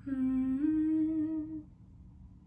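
A woman humming a cappella, one held note that steps up in pitch about a third of the way through and stops shortly before the end.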